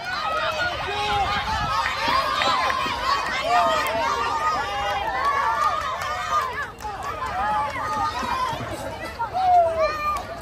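Many children shouting and cheering at once, their high voices overlapping into a continuous din.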